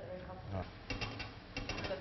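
Two quick runs of sharp, ratchet-like clicks, each lasting about a third of a second and starting about a second in.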